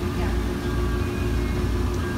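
Steady machine hum: a constant low rumble with an even drone over it, unchanging throughout.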